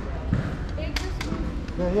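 Indistinct voices over a steady low background rumble, with a couple of sharp clicks about a second in and a voice starting near the end.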